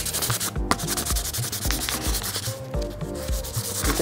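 Hand sanding of a plastic wheel centre cap with sandpaper, in quick back-and-forth strokes with a brief pause about half a second in. The sanding scuffs the finish to a matte key for primer.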